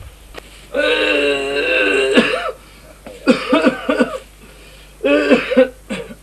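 A man's voice makes one long, drawn-out vocal sound of about two seconds, then two shorter throaty vocal bursts.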